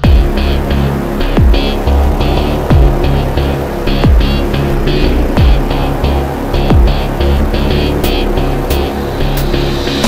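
Darksynth electronic music at 90 BPM. The full arrangement comes in suddenly at the start, with deep booms that drop in pitch about every 1.3 seconds over a sustained synth bass and rapid bright ticks.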